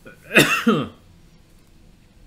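A man coughs: two quick bursts about half a second in, then quiet room tone.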